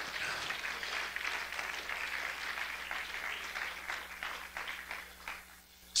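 Congregation applauding, fairly faint, the clapping dying away near the end.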